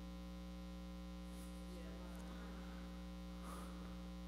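Faint, steady electrical mains hum in the microphone's audio chain, with a couple of faint rustles, about a second and a half in and near the end.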